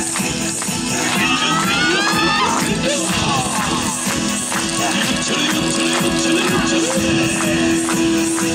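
Recorded yosakoi dance music played loudly over an outdoor loudspeaker, with a steady driving beat. About a second in, a pitched phrase slides upward for a second or so.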